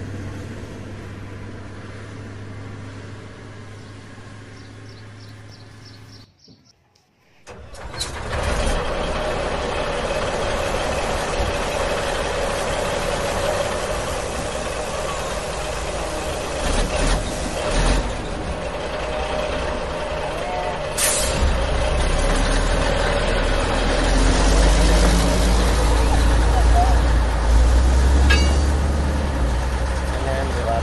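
A heavy truck engine running, most likely a dubbed sound effect over toy trucks. It breaks off briefly about six seconds in, comes back louder, and after a short hiss at about two-thirds of the way through it takes on a deep rumble that swells toward the end.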